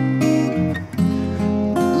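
Two acoustic guitars strumming chords: the chord changes about half a second in, rings down briefly, and a fresh strum comes in at about one second.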